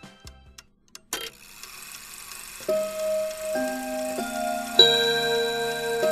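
A sharp click about a second in, then held musical notes entering one after another and building into a chord, with a clock ticking along.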